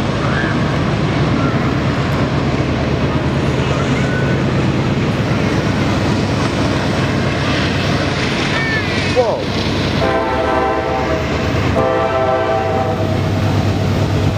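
Norfolk Southern freight train's diesel locomotives running with a steady low drone, with two blasts of the locomotive horn about ten and twelve seconds in.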